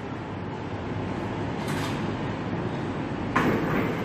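Steady rumbling background noise with no clear tone, with a brief hiss about two seconds in and a louder rush near the end.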